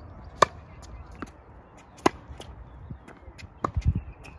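Tennis ball struck by a racket: two sharp hits about a second and a half apart, with fainter ball bounces between, and a short low rumble near the end.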